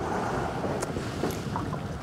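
Steady wind and water noise on an open lake, with a few faint clicks and taps.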